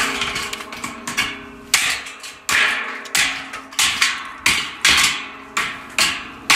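Hammer blows on a stainless steel washing machine drum, knocking out its crimped-on plastic bottom: a steady series of strikes, a little under two a second, each ringing briefly before it fades.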